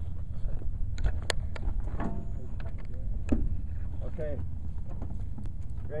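Wind buffeting the microphone with a steady low rumble, broken by a few sharp clicks and knocks of handled metal parts.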